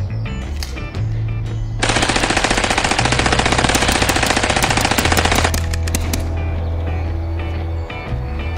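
Dubbed machine-gun sound effect: one long, rapid automatic burst starting about two seconds in and stopping about three and a half seconds later, over background music.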